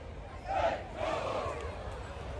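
Crowd noise in a stadium, with a voice shouting out twice, briefly, in the first second and a half.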